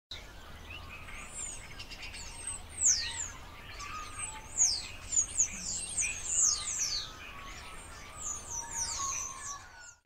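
Several birds chirping and singing, with many short high whistles that fall steeply in pitch scattered through.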